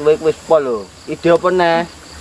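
A man's voice speaking Javanese in three short, animated phrases. A faint, steady high-pitched insect drone sits behind it.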